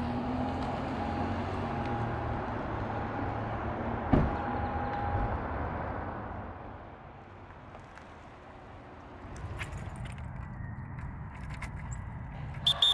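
A car driving through a parking lot, its sound swelling and then fading away by about seven seconds in. About four seconds in there is a single car-door thump. A few light clicks follow near the end.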